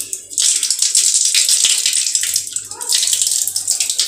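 Water running from a brass tap in a thin stream and splashing onto the floor of a sink basin. It starts about a third of a second in and runs steadily, with a brief dip near the three-quarter mark.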